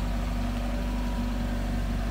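First-generation Mazda Miata's four-cylinder engine idling steadily.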